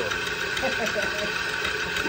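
Steady mechanical hum of a running motor, even and unchanging, with faint voices over it.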